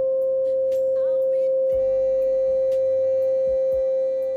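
A steady electronic pure tone held at one pitch, with fainter higher tones joining about two seconds in: the Quantum Life iPhone app's sine-wave audio tone played during its energy scan.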